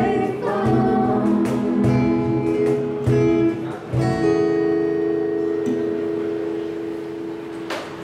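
Live acoustic band ending a ballad: two acoustic guitars strumming with cajon hits and a woman's voice, then a last chord about four seconds in that rings out and slowly fades.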